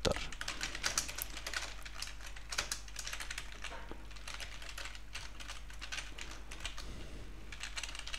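Typing on a computer keyboard: a quick, uneven run of key clicks over a faint, steady low hum.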